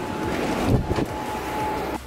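Wind rushing over the camera microphone, with a faint steady high tone running under it for most of the time.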